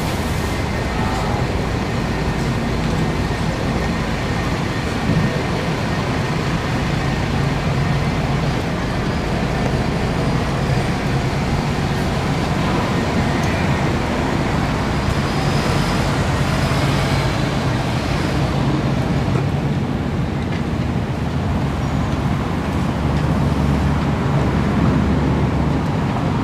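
Steady road traffic noise with a low engine rumble under it, swelling slightly near the end.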